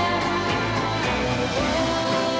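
A pop song sung live by a woman into a handheld microphone over a musical backing with a steady bass beat; she holds long notes and slides up into a new one near the end.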